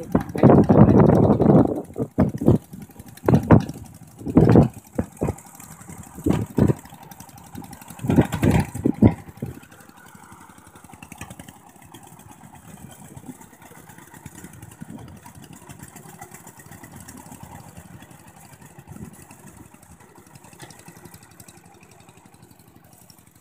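Two-wheel walking tractor's single-cylinder diesel engine running steadily at a distance while it ploughs a flooded paddy, heard plainly in the second half. The first half is taken up by loud, irregular bursts of noise.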